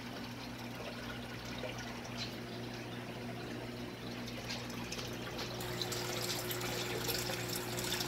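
Aquarium filter running: a steady trickle of water over a low motor hum.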